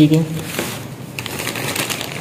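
A clear plastic zip-lock bag of cardboard kit pieces rustling and crinkling as it is handled.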